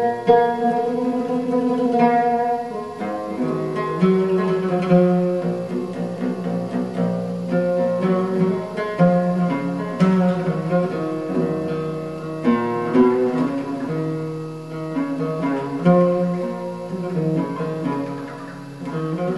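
Oud played solo, a melodic instrumental passage of a Turkish arabesk song, its notes moving and held in turn.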